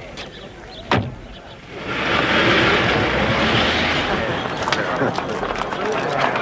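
A single sharp knock about a second in. Then a loud crowd hubbub rises, many voices talking at once.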